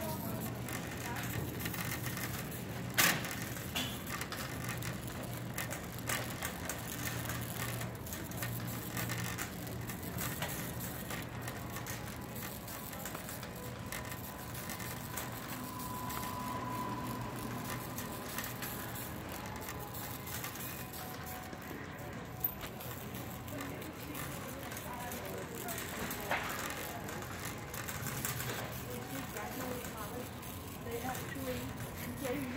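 Wire shopping cart being pushed along a store floor, its wheels and basket rattling steadily. Shoppers' voices sound in the background.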